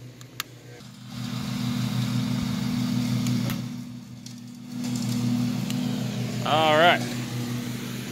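A grill lighter clicks twice, then a steady low engine-like drone sets in, dipping briefly around four seconds in before returning.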